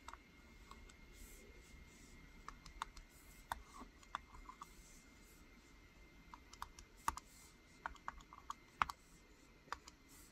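Plastic stylus nib tapping and sliding on the drawing surface of a Parblo A610 Pro pen tablet: faint, irregular light clicks as strokes are drawn, clustered more thickly in the second half.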